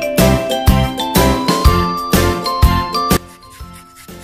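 Background music with a bright, bell-like jingling melody over a steady beat of about two beats a second, stopping about three seconds in.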